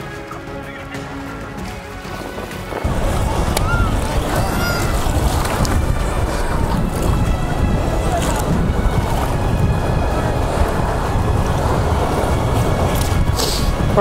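Background music for about the first three seconds. Then it breaks abruptly into loud wind rumble on the microphone over the wash and splash of shallow surf, which continues steadily.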